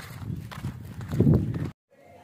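Footsteps of a person walking on a dirt road, mixed with handling noise on the camera microphone, in an uneven series of soft knocks. The sound cuts off suddenly near the end.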